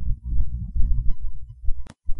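Deep, low throbbing pulses in a background soundtrack bed, repeating unevenly like a heartbeat, with one sharp click near the end.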